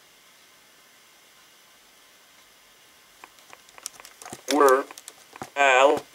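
A person's voice: after about three seconds of quiet, faint clicks, then two short vocal sounds with a wavering pitch near the end.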